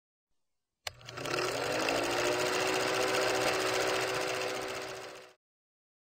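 Film projector sound effect: a click, then the motor spinning up in pitch and running with a rapid, even mechanical clatter for about four seconds before cutting off suddenly.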